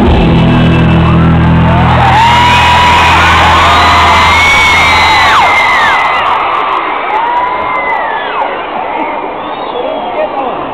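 A live band's final held chord fades out about five and a half seconds in, under a concert crowd cheering and screaming with many high voices rising and falling; the crowd's cheering carries on alone once the music stops.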